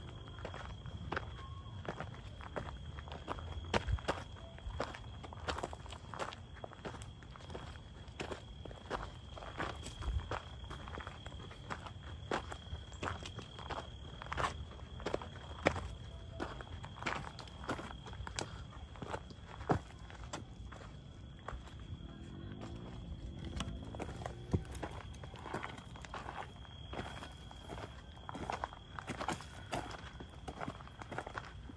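Footsteps on a dry dirt trail, a steady run of uneven steps at a walking pace as people climb a hill. A faint steady high-pitched tone runs underneath.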